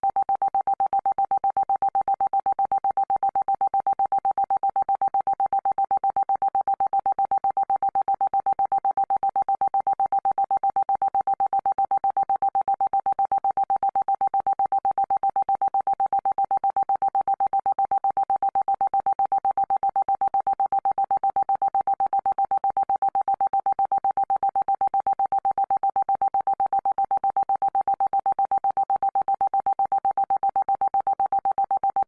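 A synthesized 'frequency healing' tone: one steady pitch that pulses rapidly and evenly, unchanging throughout.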